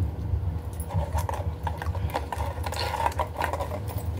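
Young Rottweiler licking and chewing curd and roti from a hand: a quick run of wet smacking and lapping clicks, over a steady low rumble.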